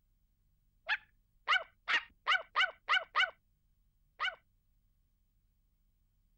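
A small dog barking in short, high yaps, each dropping slightly in pitch: a quick run of seven, then one more after a pause of about a second.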